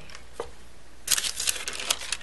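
An acrylic clay roller and the deli paper under a slice of polymer clay being handled: a single light click, then from about a second in, a second of crisp crinkling and ticking.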